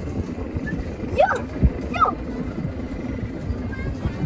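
Low rumble and knocking of a moving amusement-park ride, with two short whooping cries from riders that rise and fall in pitch, about one and two seconds in.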